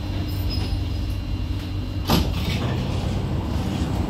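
Kawasaki–CSR Sifang C151B metro train standing at the platform with its steady low hum, and a single sharp clunk about two seconds in as the saloon doors open, followed by a brief hiss.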